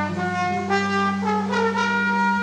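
Saxophone playing a slow melodic phrase of a few held notes over a steady sustained bass note, an instrumental fill between sung lines of a live band's song.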